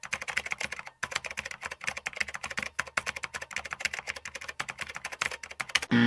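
Computer keyboard typing in a quick run of keystrokes as a terminal command is entered, with a brief pause about a second in.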